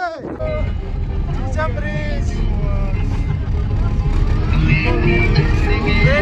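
A vehicle driving, heard from inside: a loud, steady low rumble of engine and road noise that sets in just after the start. Brief voices come over it, and music begins playing about four and a half seconds in.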